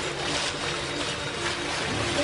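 Steady rushing noise of sea water along the side of a moving boat.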